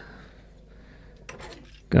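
Faint handling of a metal spring-loaded scissor boom arm, with a few light metallic clicks about a second and a half in.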